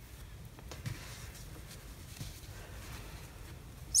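Faint rustling of hands handling yarn and a crocheted mitten while a yarn tail is woven in, with a few soft ticks.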